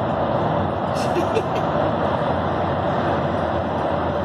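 Steady road and engine noise of a vehicle driving through a road tunnel, heard from inside the cab.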